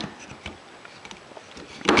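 Plastic handling knocks from a DeWalt cordless drill and its 18V NiCad battery pack: a sharp click at the start, faint small ticks, then a louder clatter near the end as the pack is pushed onto the drill.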